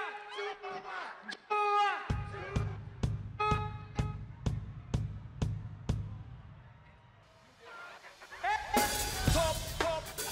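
Live Afrobeats music over a festival sound system. A pitched melodic riff opens, and a drum-and-bass beat of about two hits a second comes in about two seconds in. The beat fades out by about seven seconds, and full, loud music comes back near the end.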